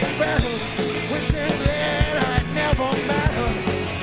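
Live blues-rock band playing an instrumental passage: a drum kit keeps a steady beat under a lead melody line that bends in pitch.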